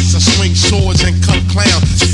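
Hip-hop track with rapped vocals over a steady, heavy bassline and drum beat.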